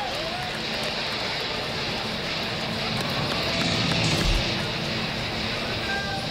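Ballpark ambience: a steady crowd murmur with music playing over the stadium's public-address speakers.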